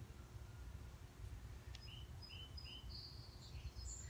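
A bird calling faintly in a garden: three short, evenly spaced chirps about two seconds in, then a brief higher trill, over a low steady outdoor rumble.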